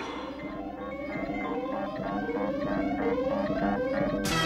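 Electronic synthesizer sounds: a rising sweep repeating about every three-quarters of a second over a steady pulsing tone, slowly growing louder.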